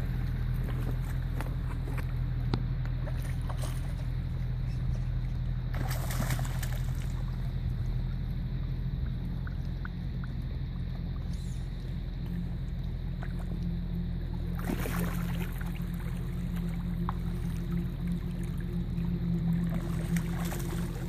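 Steady rush of a shallow creek with a low rumble, rising briefly to louder surges of noise about six seconds in and again about fifteen seconds in.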